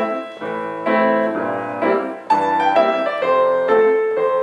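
Grand piano played with both hands: a short phrase of chords, about two a second, each struck and left ringing.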